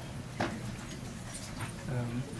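Low murmur of voices and people moving about in a lecture hall, with one sharp knock about half a second in.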